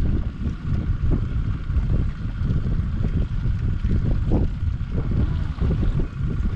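Wind buffeting the microphone with a heavy, gusty rumble, over a steady faint high hum.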